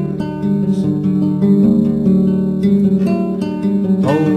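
Acoustic guitar strumming chords in the instrumental close of a folk ballad.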